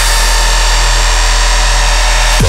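Dubstep: one distorted, buzzing synth bass note held steady and loud, over a deep sub-bass.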